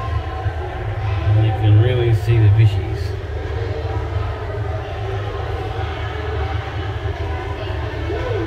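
Steady low droning hum of aquarium machinery, with indistinct voices over it about a second and a half to three seconds in.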